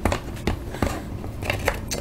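A handful of small, separate clicks and crunches as metal snips grip and bite into a hard plastic PSA graded case.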